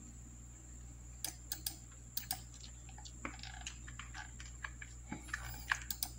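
Faint, irregular clicking of a computer mouse and keyboard, a dozen or so scattered clicks, over a steady low hum.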